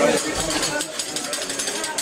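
Metal spatula clattering and scraping rapidly on a steel teppanyaki griddle: a quick, irregular run of sharp clicks and scrapes.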